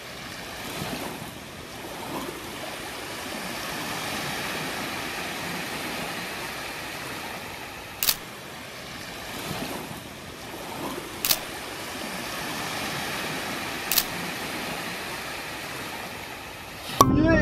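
Small waves washing onto a sandy beach in a steady, gently swelling wash of surf. Three sharp clicks, about three seconds apart, mark still photos coming up, like a camera shutter.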